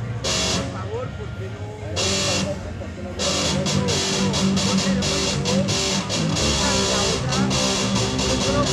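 Live amplified rock band: electric guitar, bass guitar and drum kit. Two short cymbal-crash hits come in the first couple of seconds over held bass notes, then the full band starts playing about three seconds in and keeps going.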